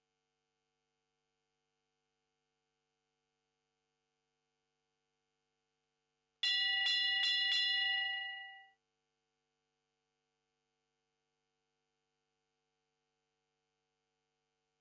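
A show-jumping start bell rings in four quick strikes about six seconds in and fades out over about two seconds. It is the judges' signal that the rider may begin her round. Otherwise near silence with a faint steady hum.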